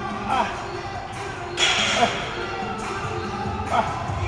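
Background music with steady held tones, over which a man makes short effortful grunts roughly every second and a half while lifting dumbbells. A louder hissing exhale comes about one and a half seconds in.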